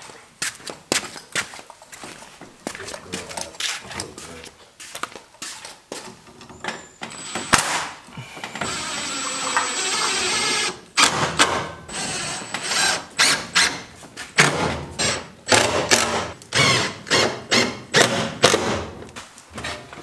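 Cordless Makita driver running for about two seconds, a little before halfway, as it drives a screw through a wooden handle into the coop frame. Sharp knocks and clatter of wood and tools being handled come before and after.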